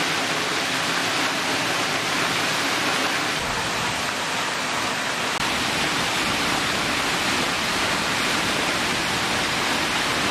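Steady rush of a tall waterfall, water plunging free onto rock and splashing, with a deeper rumble filling in from about three seconds in.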